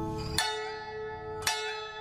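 Background music of slow plucked-string notes: two notes are struck, about half a second and a second and a half in, and each is left to ring out.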